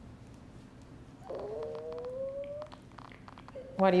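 A domestic cat's single drawn-out meow, slowly rising in pitch, starting about a second in.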